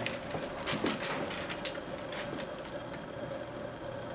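Quiet room tone in a small room: a steady faint hum with a few faint clicks in the first couple of seconds.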